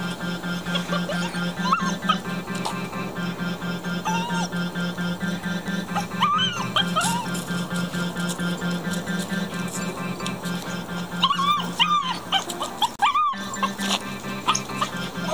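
A puppy whining in short, high, wavering cries, a few at a time, with the most of them near the end. Background music with a steady beat runs underneath.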